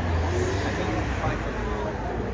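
Indistinct conversation among a small group of people standing close together, over a steady low rumble of street traffic.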